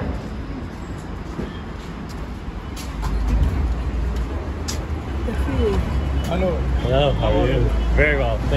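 Street ambience: a steady low rumble that grows louder about three seconds in, a few sharp clicks, and passers-by talking over it in the second half.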